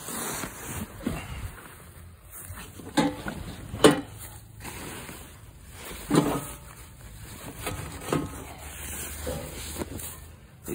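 Close-up handling noise: a fabric cover and plastic sheeting rustling as they are moved, with two sharp knocks about three and four seconds in.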